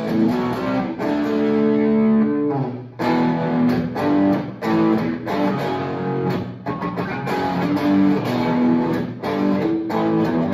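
Hollow-body electric guitar with low-output pickups, played through distortion on its bridge pickup. A chord rings out about a second in and is cut off near three seconds, followed by choppy, rhythmic chords and riffs.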